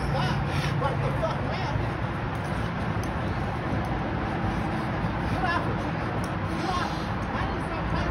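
Indistinct voices of people talking over a steady outdoor background rumble. No clear growling or snarling stands out.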